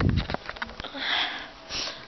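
Handheld camera being moved close to the microphone: a low thump and a run of small clicks, followed by two short sniffs, about a second in and near the end.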